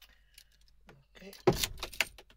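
Car keys jangling, with a few faint light clicks.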